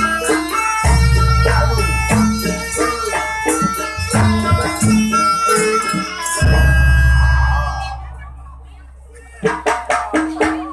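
Live Javanese gamelan music for a jaranan dance: metallophones and drum playing, with a deep large-gong stroke about a second in and again around six and a half seconds. The music dies away near eight seconds and sharp strokes start up again just before the end.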